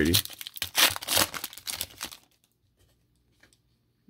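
The wrapper of a Panini Elite football card pack being torn open: a run of crinkling rips lasting about two seconds.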